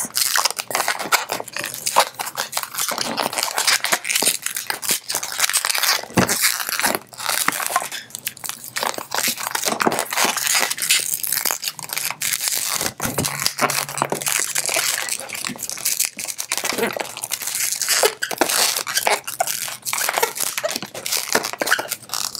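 A latex 160 modelling balloon being twisted and pinch-twisted by hand: a continuous run of short rubbery squeaks and crackling as the inflated latex rubs and turns on itself.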